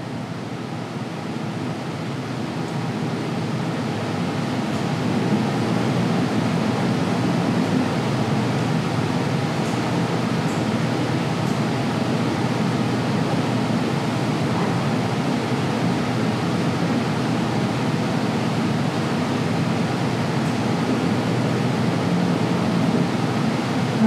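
Steady rushing noise with a faint low hum under it, swelling a little over the first few seconds and then holding even, like air conditioning or a ventilation fan running in a small room.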